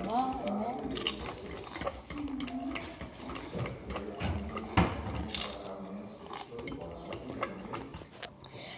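Doritos tortilla chips being chewed close to the microphone: a run of irregular crisp crunches, with one louder knock about five seconds in.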